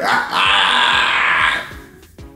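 Background music with a steady low beat. Over it a man laughs loudly for about a second, then it dies away near the end.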